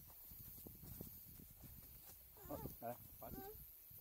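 Footsteps on a dirt trail with leaf litter, soft irregular thuds, then a person's voice briefly about two and a half seconds in.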